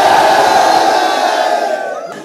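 A large group of young men and women cheering together in one long, loud shout that dies away near the end.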